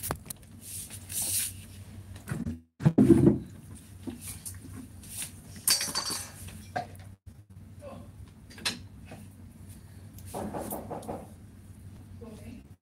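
Scattered close knocks, clicks and rustles, with a louder thump about three seconds in and another near six seconds. The sound cuts out completely twice, briefly.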